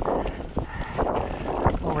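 Mountain bike ridden along a narrow wooden plank skinny: tyres knocking on the boards and the bike rattling, a few sharp knocks over a steady low rumble.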